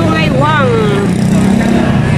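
Busy city street sounds: road traffic with voices, and one pitched sound that rises and falls in pitch a fraction of a second in.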